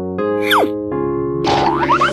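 Children's background music with cartoon sound effects: a quick falling glide about half a second in, and a run of rising swoops near the end.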